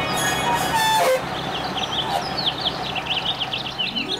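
Background music stops about a second in; then many quick bird chirps sound over the steady running of a bus engine.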